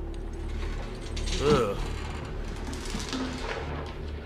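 Film soundtrack: handcuff chains rattling and clinking as cuffed hands shift on a table, over a low steady drone. A short wavering pitched sound about one and a half seconds in is the loudest moment.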